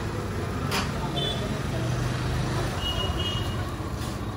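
Busy street ambience: steady traffic noise with a low engine hum, one sharp knock under a second in, and a few brief high-pitched beeps.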